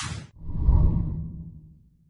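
Logo intro sound effects: a short whoosh at the start, then a low swell that builds to its loudest just under a second in and fades away.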